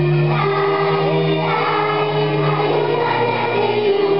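Children's choir singing an Italian Christmas song, with long held notes.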